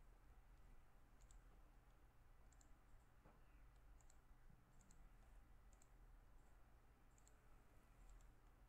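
Near silence with faint computer mouse clicks, about seven scattered through, some in quick pairs, over a low steady hum.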